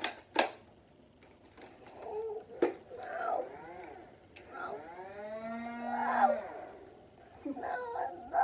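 Two sharp plastic clacks from a toy foam-dart blaster being handled, then a boy's wordless groans and a long wavering whine.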